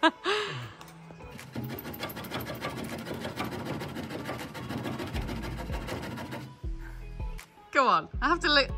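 Handsaw cutting through a wooden roof timber in a fast run of strokes, from about a second and a half in until about six and a half seconds, over background music.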